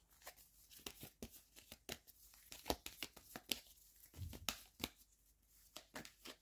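Tarot cards being handled and laid down by hand: a string of light, irregular clicks and taps.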